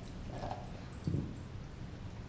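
Doberman gnawing and mouthing a raw beef leg bone on concrete, with a dull knock about a second in as the bone bumps the ground.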